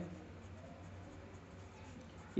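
Pencil writing by hand on paper, faint scratching strokes as a short line of words is written.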